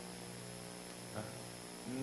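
Steady electrical mains hum with a faint hiss, with a faint brief sound about a second in.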